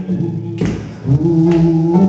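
Live acoustic rock-blues band jamming: long, steady held notes over guitars, banjo and hand percussion, with a sharp strike a little after half a second in.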